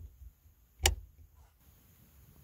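A hand-worked latch clicking once, sharply, just under a second in, with a couple of faint knocks before it.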